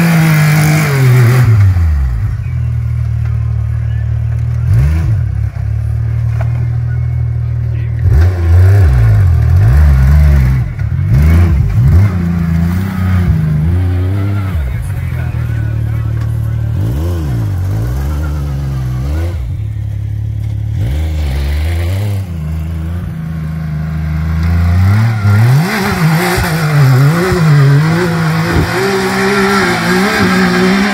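Turbocharged Yamaha YXZ1000R side-by-side's three-cylinder engine running. Its revs drop about a second in and hold steady, then it is revved up and down again and again. Near the end it revs up hard as the machine pulls away through mud and snow.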